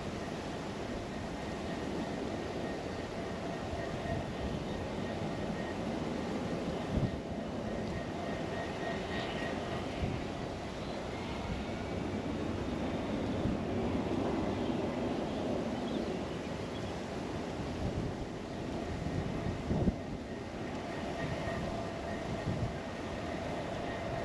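Diesel-hauled narrow-gauge ore train running past: a steady rolling noise with a faint held engine tone and a few short knocks.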